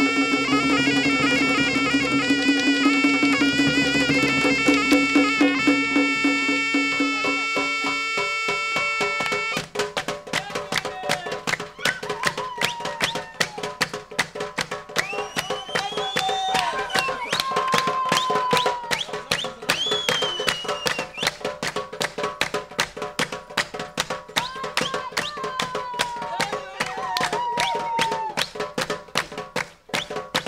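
Traditional Mazandarani folk music. A shawm plays an ornamented melody over a low drone and drum strokes, and stops about a third of the way in. Fast hand-beaten percussion, including a large metal basin, carries on with a few brief sliding melodic phrases.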